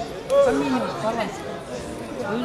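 People talking: a conversation close to the microphone, with a louder phrase about half a second in.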